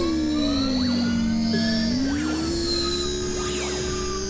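Experimental electronic synthesizer drone music. A low sustained tone slides down, holds, then glides back up about halfway through, under a high tone that sweeps up and then falls, with quick thin chirps darting up and down throughout.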